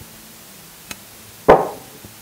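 A glass herb jar set down on a wooden worktop: a faint tick, then one sharp knock about one and a half seconds in.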